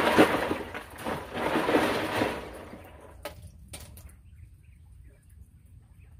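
Water sloshing and splashing in a cooler as a skinned quail carcass is swished through it to rinse it, in two long swishes. A couple of light knocks follow.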